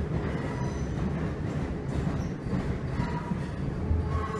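Class 321 electric multiple unit running, heard from inside the carriage: a steady low rumble from the wheels and running gear, with a couple of brief faint squeals.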